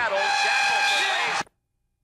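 Arena horn sounding the end of the first half: one steady, flat buzzer tone that stops dead about one and a half seconds in.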